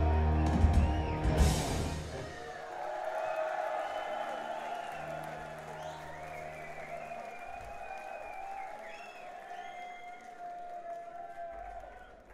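A live rock band's song ends on a loud held chord with a cymbal crash, and the audience then cheers and shouts while the music dies away, with a low note held briefly midway.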